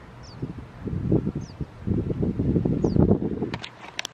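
Wind buffeting the microphone in gusts, with a small bird's short, high, falling chirp repeated three times. A few knocks of phone handling come near the end as the phone is swung down.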